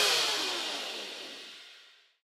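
The last notes of the closing theme music ringing out as a reverb tail, sinking slightly in pitch and fading away to silence near the end.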